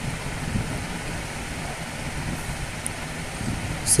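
Steady background noise with no distinct events: a low rumble under an even hiss, of the kind a room fan, air conditioner or distant traffic makes.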